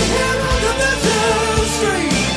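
Melodic hard rock recording playing with full band and drums. On top, a lead line bends and glides in pitch.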